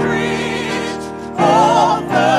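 Gospel vocal group singing live in harmony, several voices with vibrato holding long notes, swelling louder about one and a half seconds in.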